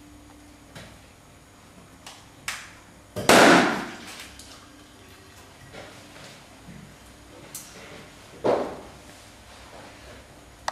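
Flour-filled rubber balloons popping as they drop onto needles: a loud pop about three seconds in and a second one near the end, with a few light knocks before them.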